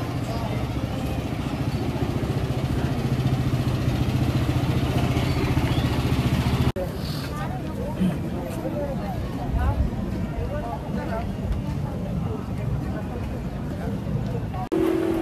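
Street-market ambience. For the first half an engine hums steadily and a little louder over time, then cuts off abruptly. After that, people's voices in the background and small knocks carry on.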